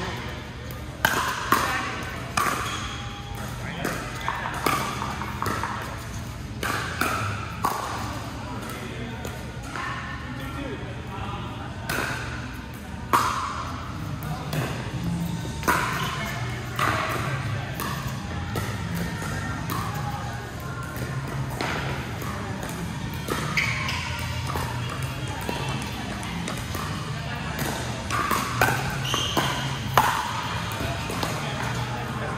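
Pickleball paddles striking a hard plastic ball in a doubles rally in a large indoor hall: sharp pops at irregular intervals, a dozen or so over the stretch, over a steady low hum and background voices.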